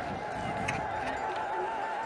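A high, rapidly warbling trill held steadily: women ululating (ililta) in celebration.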